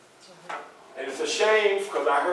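A man speaking to a small audience in a small room, starting about a second in. Before that it is quiet except for a single short knock about half a second in.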